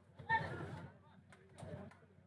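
A man's voice in two short bursts of speech or calling, the first about a quarter second in and the second near the end.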